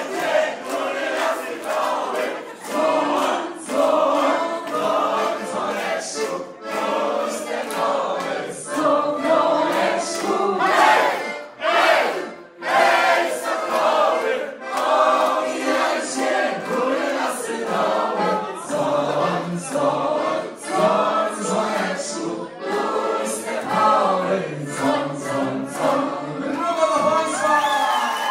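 A group of people singing together loudly, with crowd voices mixed in.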